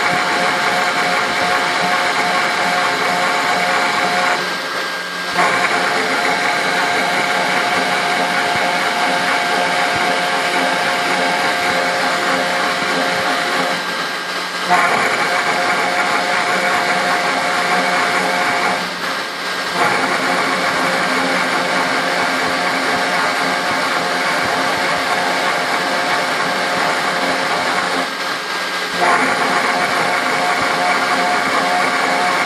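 Spindle of a 3040T desktop CNC router running at about 10,000 rpm with a steady whine while a 90° engraving bit cuts a vector pattern into aluminium. The cutting noise drops out briefly four times.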